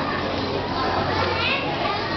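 Many children's voices chattering at once, with a steady low hum that fades out near the end.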